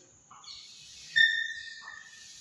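Chalk drawn across a chalkboard in a long line: light scratching at first, then a steady high squeak from about a second in that holds for most of a second.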